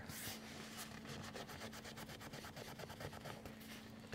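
Faint rubbing of a microfiber towel scrubbing a white vegan-leather car seat, a quick run of soft scratchy strokes, over a low steady hum.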